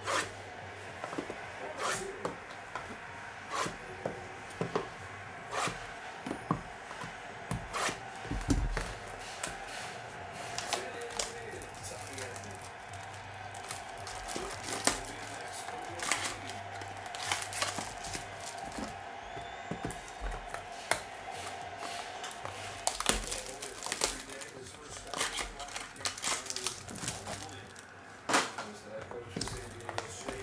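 Sealed trading-card boxes being cut and pried open by hand: a scattered run of sharp clicks and taps, with plastic wrap and cardboard crinkling and tearing.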